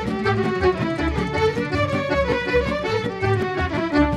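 Instrumental folk music: violins play the tune over a double bass with a steady beat.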